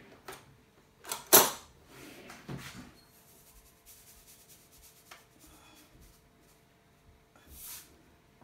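Small kitchen handling noises as salt is taken from a canister and spooned over mashed potatoes: a sharp knock about a second in, a few softer knocks just after, and a brief rustling hiss near the end.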